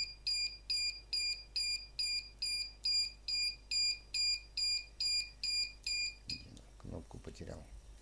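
Small speaker on an Arduino-based battery capacity tester beeping about twice a second in short, high-pitched beeps, the end-of-discharge signal that both batteries have run down. The beeping cuts off suddenly a little over six seconds in, followed by faint handling noises.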